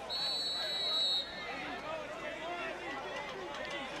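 A whistle, of the kind a referee blows, sounds once as a steady shrill note for about a second. The murmur of a stadium crowd runs under it.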